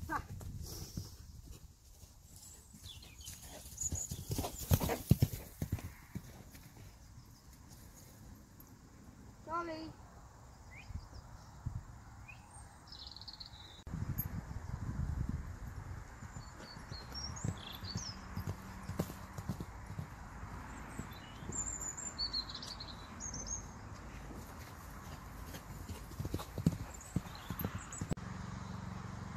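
A pony's hooves thudding on grass turf as it canters loose around the field, the hoofbeats coming in irregular runs and loudest about four to six seconds in. Birds chirp faintly in the background.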